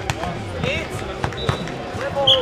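A football being struck during a nohejbal rally: a few sharp kicks and headers, two close together near the start and two about a second later. Players give short shouts between the hits.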